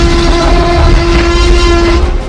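Animated Tyrannosaurus roar sound effect: one long, loud roar held at a steady pitch over a deep rumble, cutting off near the end.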